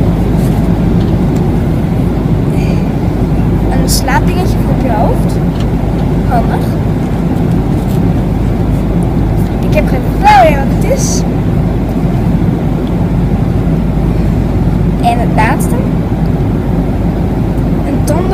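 Airliner cabin noise: a steady, loud low rumble throughout, with a few brief snatches of voice over it.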